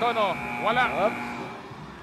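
Arena shot-clock buzzer sounding as the shot clock runs out, a steady tone that stops about one and a half seconds in, with brief voice calls over it.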